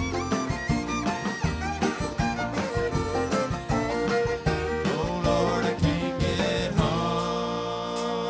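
Bluegrass string band playing live, a fiddle bowing a lead line over picked banjo and acoustic guitar. About seven seconds in the rhythm stops and the band holds a ringing chord.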